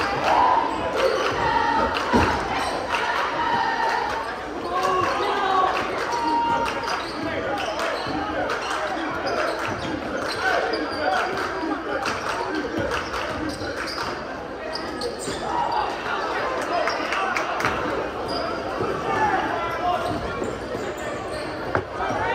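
A basketball bouncing on a hardwood gym floor during live play: repeated sharp knocks scattered throughout. Spectators' voices and chatter run underneath, echoing in the large gym.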